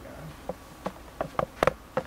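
A series of about six sharp, irregularly spaced clicks or taps, the loudest near the end.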